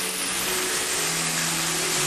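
Chicken and tomatoes frying in a stainless-steel pan, a steady sizzle.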